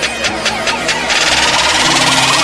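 Electronic intro music with low sustained notes and a ticking beat about five times a second. From about a second in, a loud hissing whoosh swells over it.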